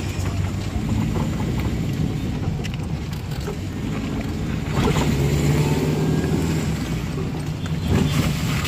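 Car engine and tyre noise heard from inside the cabin while driving slowly, a steady low drone that gets a little louder about five seconds in.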